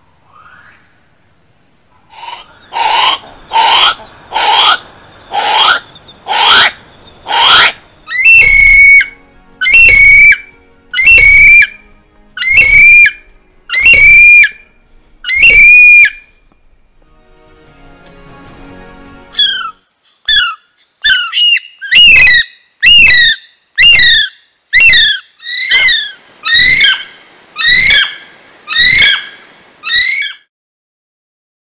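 North Island brown kiwi calling. About two seconds in comes a quick run of harsh, hoarse cries, typical of the female. Then come six long, shrill whistles that rise and fall, one every second and a half or so, and after a short break a faster run of whistles, typical of the male.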